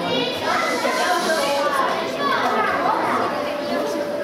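Children's voices talking, high-pitched, in a large hall.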